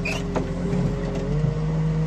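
Diesel engine and hydraulics of a car crusher's loader boom running steadily while the boom moves. The pitch steps up slightly a little over a second in.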